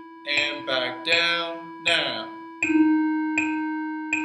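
Electronic keyboard holding a sustained note of the concert E major scale in whole notes, with a new note struck about two and a half seconds in, over a metronome clicking steadily at 80 beats per minute. A man's voice sounds briefly over it in the first half.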